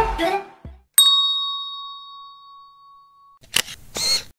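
The end of a music track, then a single bell-like ding from an outro sound effect, struck once and ringing down over about two seconds. A short noisy swish comes near the end.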